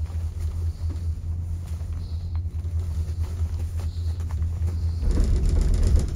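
Gondola cabin travelling on the haul rope, heard from inside the cabin as a steady low rumble. From about five seconds in it swells into a louder, rougher rumble as the cabin passes through the sheave assembly on a line tower.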